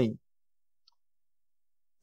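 A man's sentence ends just after the start, then near-total silence with one faint, tiny click just under a second in.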